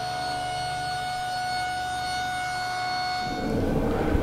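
Table saw running with a steady high-pitched whine while a board is crosscut on a sled. The whine stops near the end.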